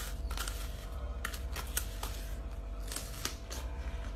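About half a dozen sharp, crisp crunches, spread unevenly, from raw bilimbi (belimbing wuluh) fruit with coarse salt being bitten and chewed.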